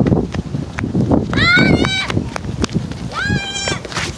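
Two high-pitched, drawn-out calls, the first about a second in and the second near the end, each held for under a second, over scattered knocks and handling noise.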